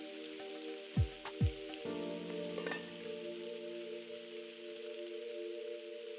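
Background music of held synth chords, with two short low booming hits that drop in pitch about a second in and a change to a new, pulsing chord just before two seconds. Underneath, a faint steady sizzle of the zucchini curry cooking in the pan.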